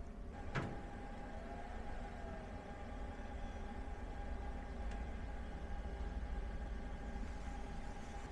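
ALLPOWERS R1500 power station charging from the wall at about 900 watts: a faint steady whir with a thin steady whine from its cooling fan and charger. A single click about half a second in.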